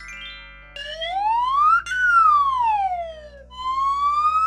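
Cartoon whistling sound effect: a held electronic note, then a siren-like tone that slides up, falls back down, and starts rising again near the end, with a brief click at the top of the first rise.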